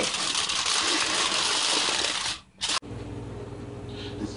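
Aluminium foil crinkling as it is folded over into a packet, a loud continuous rustle that stops abruptly a little under three seconds in. After it comes a quieter, steady low hum.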